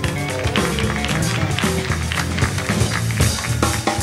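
A short live piano solo: a quick run of many fast notes over steady bass from the backing band.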